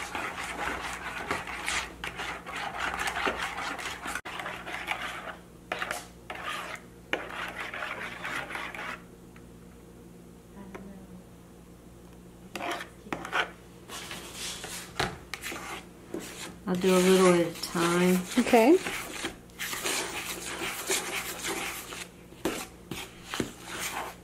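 A metal spoon scraping and clinking against a plastic mixing bowl as a liquid egg, sugar and butter mixture is stirred. A quieter stretch follows while it is poured out, then more scraping and clinks as it is mixed into flour.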